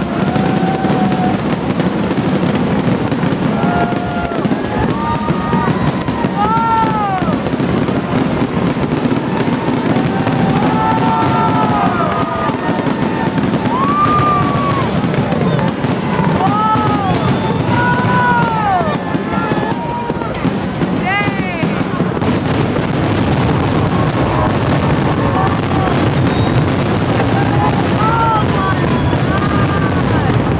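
Fireworks grand finale: shells bursting and crackling without a break. Over it, people's voices call out over and over in high cries that rise and fall in pitch.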